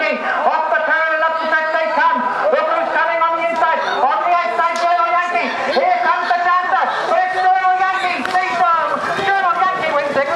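A man's voice calling a harness race finish over the public address, continuous and unbroken.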